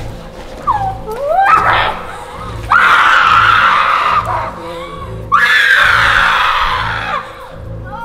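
A person screaming while held down in what is presented as a spirit possession: a few short cries, then two long, loud screams, the second sliding down in pitch. Background music with a low, evenly pulsing beat runs underneath.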